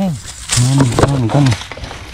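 A man's voice speaking a few drawn-out syllables in the middle, with a short sharp knock about a second in.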